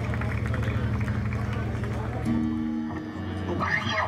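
Live rock band's amplified sound between songs: a steady low bass hum through the PA, two held guitar notes starting about two seconds in, and a voice over the microphone near the end.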